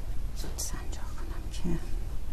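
Quiet, whispered speech over a low, steady hum.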